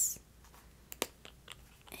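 A few faint, sharp clicks of a plastic cream-bronzer tube being handled, the sharpest about a second in.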